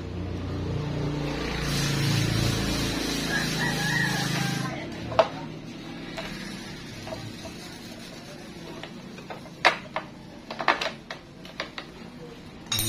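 Small metal hand tools clicking against the motorcycle engine's clutch-side bolts and cover: one sharp click about five seconds in, then a run of sharp clicks in the last few seconds, after a steady hiss in the first few seconds.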